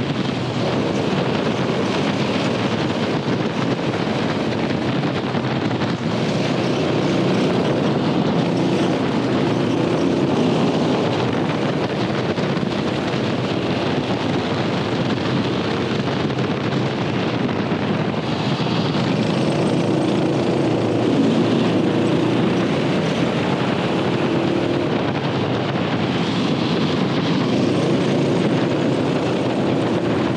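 Twin-engine ProKart running at speed on track, heard from an onboard camera with strong wind noise on the microphone. The engine note comes and goes under the wind.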